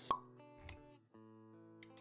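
A sharp pop just after the start, the loudest sound, then a softer low thud, over background music with held notes that drops out briefly near the middle.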